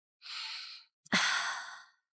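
A woman breathes in audibly, then lets out a longer, louder sigh that starts with a brief voiced catch.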